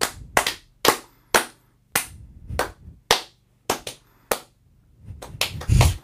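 About a dozen sharp hand taps in an uneven rhythm, tapped out as a mock Morse code signal, the loudest ones near the end.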